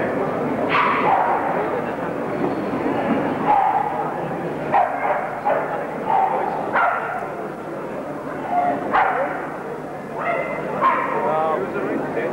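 Staffordshire bull terriers barking and yelping now and then, about seven short barks scattered through, over a steady murmur of crowd chatter.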